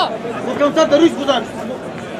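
Spectators' voices calling out and chattering in the crowd, dying down to a quieter background of crowd noise about halfway through.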